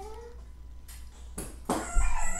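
Pen drawing short strokes on paper, with a few sharp scratches about a second in and again near the end. It opens with a brief pitched vocal sound that rises slightly.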